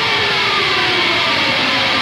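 A rock track's breakdown with the drums and bass dropped out: a steady, dense wash of sustained distorted sound with no beat.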